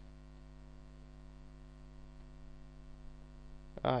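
Steady electrical mains hum in the recording: a low, even buzz with nothing else over it until a short exclamation at the very end.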